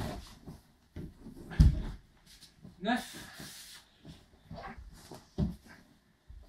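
A person in a judogi rolling sideways over the shoulders on a wooden floor. The body lands with a heavy thud about one and a half seconds in, with a shorter thump near the end and cloth rustling against the boards in between.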